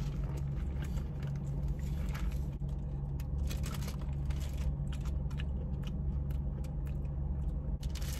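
Paper crinkling and rustling with small crackles and clicks as plastic straws are unwrapped from their paper wrappers and a paper bag is handled, over a steady low hum from the car.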